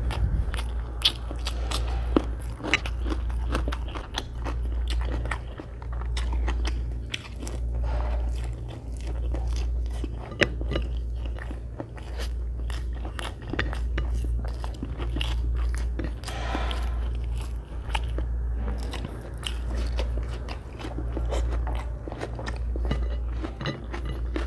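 Close-miked chewing of hand-eaten egg biryani rice, wet mouth clicks and smacks over an even chewing rhythm of about one chew a second.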